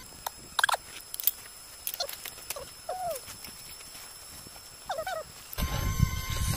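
A few short, arching bird calls, with light clicks of spoons on metal pots and plates scattered between them. Near the end a louder low rumble sets in.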